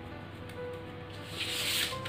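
Quiet background music with long held tones. About a second and a half in, a rubbing hiss grows louder as something slides over the drafting paper.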